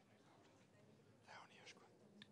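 Near silence with faint room tone, and a brief faint murmur of low voices a little past the middle.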